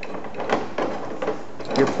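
Metal clicks and knocks of a brake-line double-flaring tool being handled as its press is loosened, a series of short sharp taps spread unevenly through the moment.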